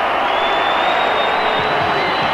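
Stadium crowd cheering a goal: a dense, steady wall of noise from the stands, with a thin high whistle-like tone held through most of it.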